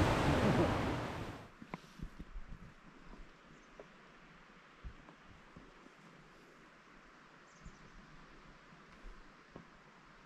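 A steady outdoor rushing hiss, of wind or running water, that fades out in the first second and a half. Then near silence with a few faint, short low thumps.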